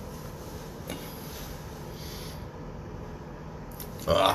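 Soft rubbing of a towel drying the face over a steady hiss, with one light click about a second in.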